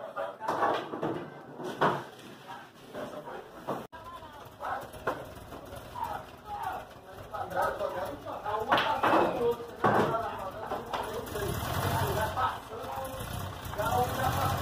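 Indistinct men's voices in a small room, with a few sharp knocks of pool balls. The loudest is a cue striking the ball with balls clacking together about nine seconds in. A low rumble builds near the end.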